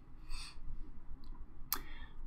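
Faint short clicks in a pause without speech: a soft one shortly after the start and a sharper click near the end.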